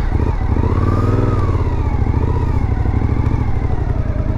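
Suzuki V-Strom motorcycle engine running as the bike rides slowly along a street. The pitch rises slightly and falls back about a second in, then holds steady.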